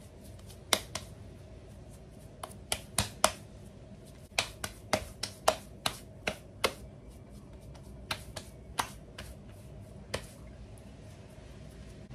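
Hands patting and slapping a bean-filled ball of corn masa to flatten it into an oval huarache. The slaps are sharp and come at irregular intervals, often two or three in quick succession.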